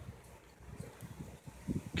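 Faint handling noise: a small bass-knob control and its cable being moved about in the hand, with one or two light clicks.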